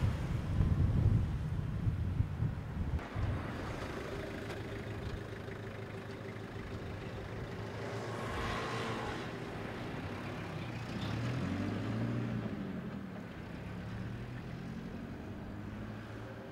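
Road traffic at an intersection: a car passes close with a loud low rumble in the first second or so, then a light truck's engine runs steadily nearby, its pitch rising and falling around eleven to twelve seconds in as it drives off.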